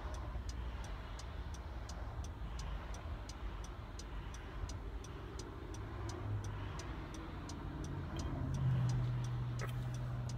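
A car's turn signal ticks steadily, about three clicks a second, over the low rumble of the car cabin on the move. A low engine hum grows louder near the end.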